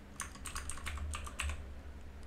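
Computer keyboard being typed on: a quick run of about nine keystrokes in just over a second, including the Caps Lock key, then the typing stops.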